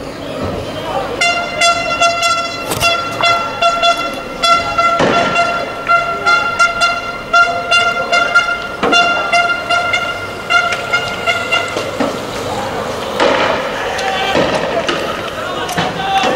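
A loud horn sounds as one long tone, steady in pitch, from about a second in until about twelve seconds, over shouting. A few sharp bangs break through it.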